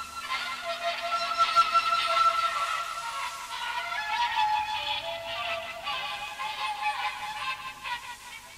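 Experimental electronic music made with a 1970s sound-effect synthesizer and tape. A steady high tone is held for about the first half, while a lower tone steps upward in pitch, with wavering overtones above it.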